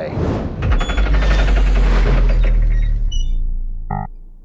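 Channel-logo intro sting: a loud, bass-heavy sound effect with a fast rattle that swells within the first second and fades away near the end.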